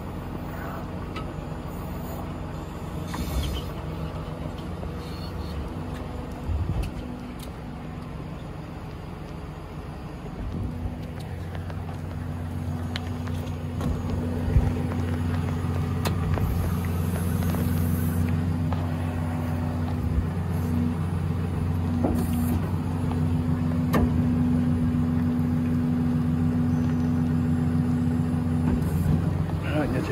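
2011 Ram 5500's 6.7 Cummins diesel engine running steadily, a low hum that gets louder about 11 seconds in.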